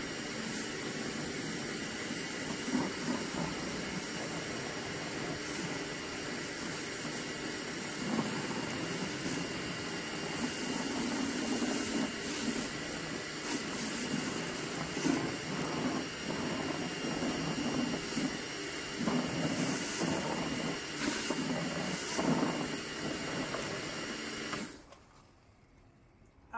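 Karcher K2 pressure washer running with a T150 rotary patio cleaner head pressed to a concrete slab: a steady hiss of high-pressure spray under the hood, over a faint steady whine. It cuts off near the end as the trigger is released.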